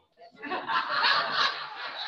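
Laughter from listeners at a joke, starting after a brief silence, swelling within about half a second and then tailing off.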